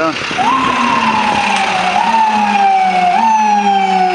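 Chevrolet ambulance's electronic siren sounding as it responds. It runs in repeated cycles, each a quick rise in pitch followed by a slow downward slide, about three cycles in four seconds.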